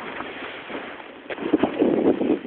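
Snowboard sliding through deep powder snow under the trees, a rough rushing hiss with wind on the microphone, swelling into louder bursts of snow spray in the second half.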